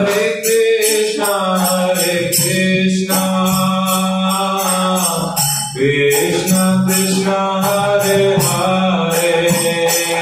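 Kirtan: voices chanting a devotional mantra over a held drone, with small hand cymbals (kartals) striking in a steady beat.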